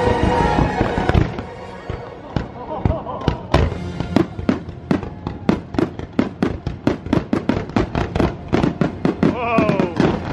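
Fireworks display going off, a rapid string of sharp bangs and pops, several a second, from about two seconds in. The show's music plays over the start.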